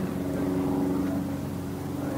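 A steady mechanical hum holding a constant low tone, like a motor running in the background.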